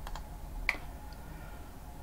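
A few light clicks from a computer key or button, the loudest about two-thirds of a second in, as the presentation is advanced to the next slide.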